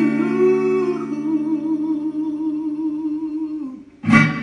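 A man humming a long held note that wavers with vibrato over a sustained electric guitar chord. Both die away shortly before the end.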